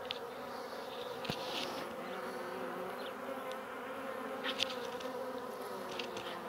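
A cluster of honeybees on the ground buzzing steadily, a low wavering hum, with a few brief high ticks along the way. The bees are huddled together while under attack by ants.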